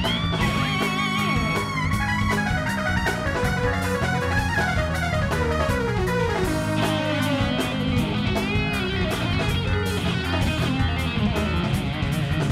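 Live prog rock band playing an instrumental passage. An electric guitar lead plays a long, wavering held note, then fast descending runs, over the drum kit and the rest of the band.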